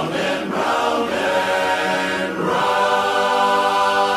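Large men's barbershop chorus singing a cappella in close harmony. The chords move for the first couple of seconds, then the chorus settles onto one long held chord.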